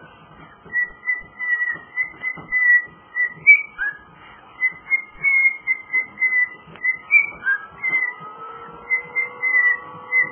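Male cockatiel whistling his song: a run of short high notes on nearly one pitch, broken now and then by a quick rising chirp.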